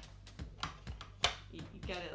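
A few irregular sharp plastic clicks and taps from hands working a red plastic jelly bean dispenser.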